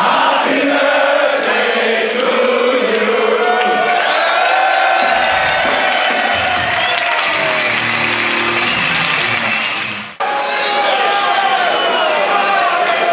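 Large concert crowd cheering and chanting, with music under it. The sound cuts off abruptly about ten seconds in, and other crowd noise follows.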